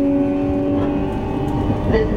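E233-series electric train's traction motors whining in steady tones that climb slowly in pitch as the train gathers speed, over the steady rumble of the wheels on the rails, heard from inside the carriage. About a second in, the lower tone drops out while a slightly higher one carries on rising.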